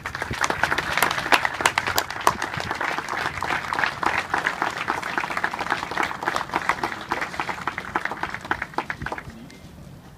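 Audience applauding, many hands clapping at once, dying away about nine seconds in.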